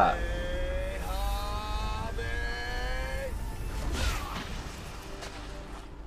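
Film sound effect of a Kamehameha energy blast: long held pitched tones over a steady low rumble as it charges, then a whoosh about four seconds in as it is let go.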